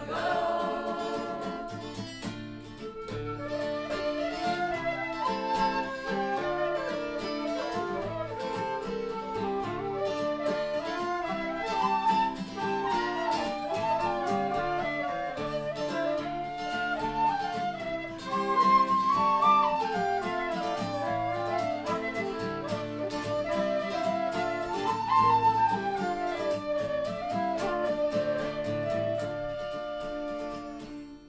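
Instrumental folk passage: a flute and whistles play the melody over strummed acoustic guitar, with no singing.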